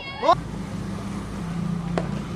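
A short, loud shout rising in pitch, then a steady low drone over open-air noise, and a single sharp knock near the end: a cricket bat striking the ball.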